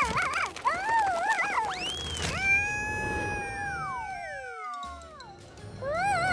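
Cartoon ant character's high-pitched nonsense vocalizing, wavering up and down, then a long held cry that slides down in pitch, over background music. Near the end the wavering chatter starts again.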